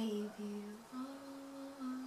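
A girl humming a slow tune with her mouth closed: a few long held notes, dipping slightly at first, then stepping up to a higher note held for about a second.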